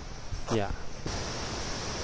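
Steady rushing noise of a waterfall, coming in suddenly about a second in and holding even.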